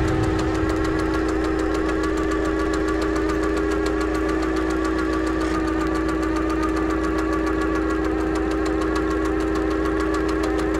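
Sound-effect drone of running machinery: a steady hum with a fast, even mechanical ticking over it.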